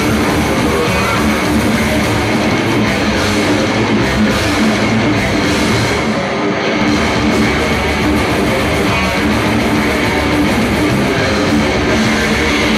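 Heavy metal band playing live: electric guitars, bass and drum kit together in one dense, continuous passage.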